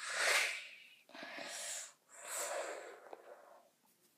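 A person's breath huffed out close to the microphone, three breathy bursts in a row, the first the loudest.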